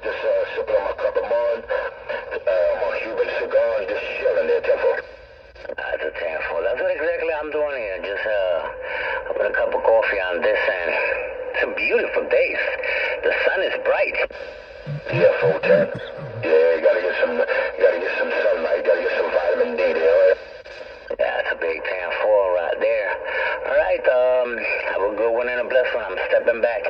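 CB radio speaker playing voice transmissions on channel 6, the talk coming through in the narrow, band-limited sound of the radio but too garbled to make out words.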